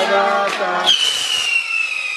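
Voices, then about a second in a firework fountain on a birthday cake bursts into a shower of sparks with a hiss and a high whistle that slowly falls in pitch.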